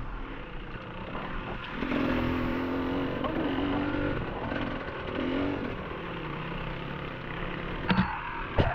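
Enduro motorcycle engine heard from on board the bike, revs rising and falling several times as it rides the trail, then settling lower and steadier in the second half.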